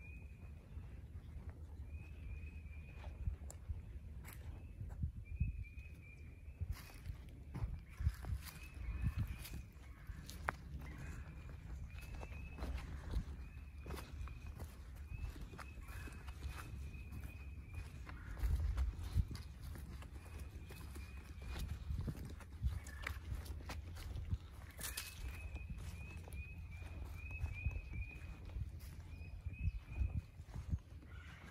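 Footsteps rustling and crunching through dry leaf litter on a forest floor, in uneven steps. Behind them a short, high trill of quick notes repeats every second or two.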